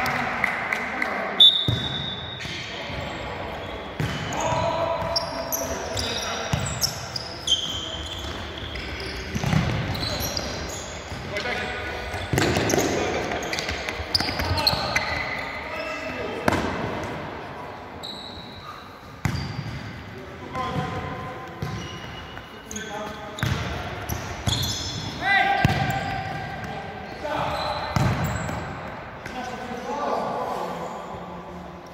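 Indoor five-a-side football in a sports hall: repeated sharp ball kicks and bounces off the hard court floor, short high squeaks of shoes on the court, and players calling out.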